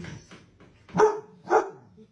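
A dog barks twice, two short barks about half a second apart.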